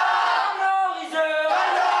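A group of teenage boys huddled together, chanting a victory chant loudly in unison. The chant is sung in held notes of about half a second, each with a short break.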